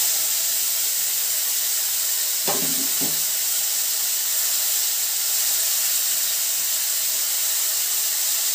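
Chopped tomatoes sizzling in hot mustard oil in a wok, just after being tipped in: a steady, loud hiss of steam and frying.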